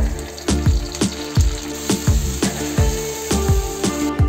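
Background music with a steady beat, over hot oil sizzling in a frying pan as curry leaves are tempered in it; the sizzle gets louder about halfway through.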